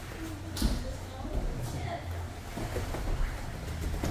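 Indistinct voices and room noise of a jiu-jitsu gym during grappling, with one sharp thump about half a second in.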